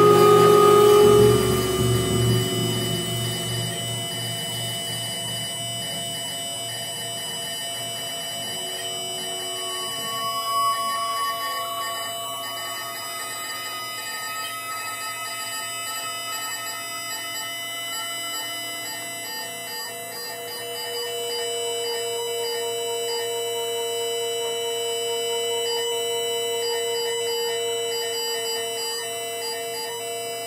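Free-improvised music for percussion, double bass and electronics: loud drum sounds die away over the first few seconds, leaving a bed of steady held tones and drones. Around the middle a single tone slides slowly upward, and in the last third a steady lower tone is held and swells slightly.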